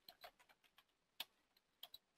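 Near silence with a few faint, scattered clicks, typical of a computer keyboard or mouse. The sharpest comes just past the middle.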